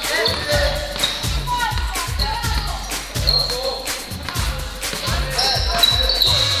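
Basketball game sounds on a hardwood gym court: a ball bouncing and short sneaker squeaks. Under them runs background music with a steady beat about twice a second.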